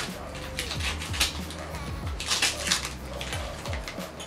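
Scissors snipping through gift wrapping and ribbon, with the wrapping crinkling in short bursts as the package is cut open, over steady background music.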